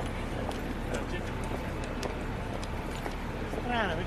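Busy street ambience: many people talking at once over a steady rumble, with scattered clicks. One voice calls out near the end.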